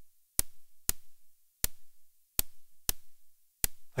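Blue noise from an SSF Quantum Rainbow 2 noise module, struck through the short-decay channel of a low pass gate. It gives six short, sharp, very bright hi-hat-type hits in an uneven rhythm.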